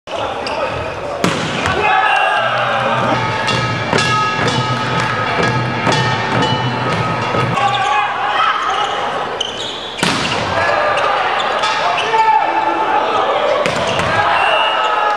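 Indoor volleyball rally: sharp smacks of the ball being hit and landing, several times, over a constant din of spectators shouting and cheering.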